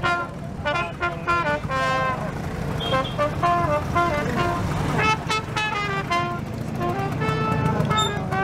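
Trumpet playing a lively tune of short, quick notes, with a pause in the middle, over the steady low rumble of scooter engines running.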